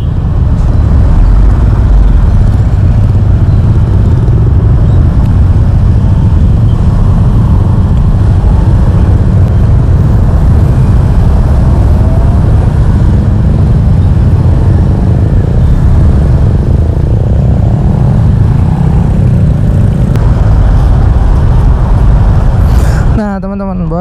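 Riding a motor scooter in dense motorcycle traffic: loud, steady wind rumble on the action camera's microphone over road and engine noise. A man's voice starts about a second before the end.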